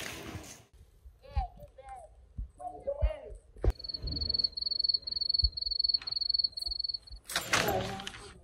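A few short voice sounds, then a click followed by a high, steady pulsing tone that lasts about three and a half seconds and stops suddenly.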